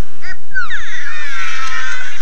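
Squeaky cartoon bird chirps from an animated film trailer's soundtrack. Several high calls overlap, each falling in pitch, starting about half a second in.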